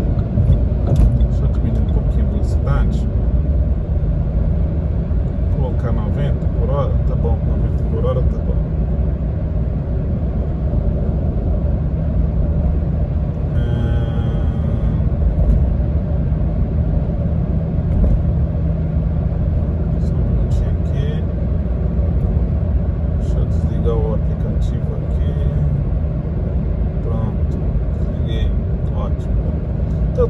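Steady low road and engine rumble inside a car cabin at highway speed. Faint, indistinct voices come and go over it.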